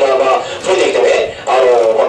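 Electric guitar played live through effects pedals: a sustained tone with a wavering pitch, dipping briefly about one and a half seconds in before it carries on.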